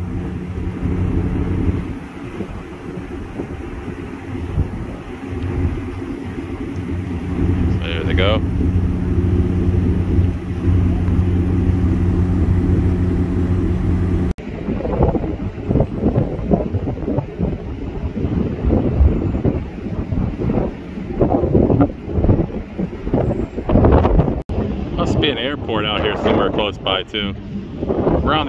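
Steady low drone of ship's diesel machinery under wind noise. About halfway through it gives way to gusty wind buffeting the microphone.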